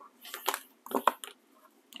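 Paper rustling and crinkling in a few short bursts as pages of a spiral-bound sticker book are flipped and handled.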